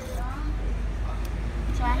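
Low, steady engine rumble of road traffic close by, which swells at the start and carries on throughout, with a short click about halfway through.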